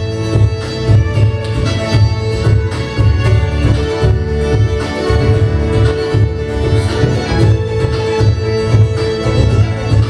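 A live folk band plays an instrumental passage, with the fiddle leading over acoustic guitar, banjo and upright double bass keeping a steady, pulsing beat.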